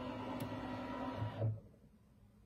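Embroidery unit of a Brother Luminaire embroidery machine driving the scanning frame during a built-in camera scan: a steady motor whir with a low hum, cutting off suddenly about one and a half seconds in.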